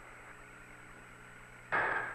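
Steady hiss and low hum of the Apollo air-to-ground radio link, with a short burst of a voice coming over the link near the end.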